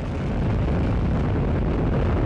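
Atlas V rocket climbing just after liftoff, its RD-180 main engine and single solid rocket booster making a steady, deep rumble. The rumble gets a little louder about half a second in.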